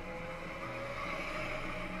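Steady, faint hum and whir of small electric Power Racing Series ride-on racers running on the track.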